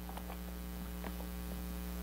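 Steady electrical mains hum, with a few faint light ticks.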